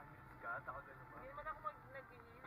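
Faint talking inside a moving car, over a steady low rumble of engine and road noise.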